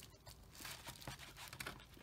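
Faint rustling and small clicks of a wire being handled and its end pushed into a yellow insulated crimp connector.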